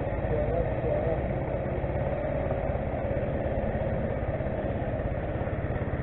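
Small vehicle engine idling steadily, an even low pulse with no change in speed.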